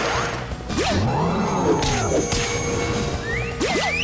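Cartoon action soundtrack: music with sound effects layered over it. There are sharp crash-like hits about a second in, around the middle and near the end, and quick sweeping whooshes that rise and fall in pitch.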